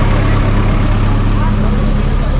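Busy street ambience: scattered voices of people walking about, over a steady low engine hum from nearby vehicles.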